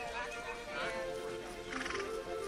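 Background music and people talking, with a pony giving a short whinny near the end.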